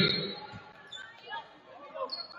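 A ball bouncing once on a hardwood gym floor about half a second in, echoing in a large hall, under faint voices and chatter. Louder voices fade out at the very start.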